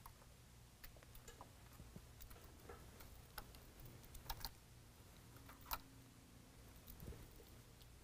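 Near silence with scattered faint clicks and taps from a mesh grille bug screen and its snap-in fasteners being handled and pressed against a truck grille, over a low steady room hum; the sharpest clicks come a little past the middle.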